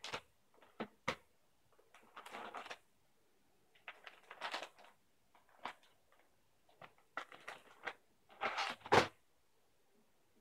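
Plastic wet-wipes packet crinkling and rustling in short bursts as a baby handles it and pulls wipes out, with a couple of sharp clicks about a second in and the loudest crinkle near the end.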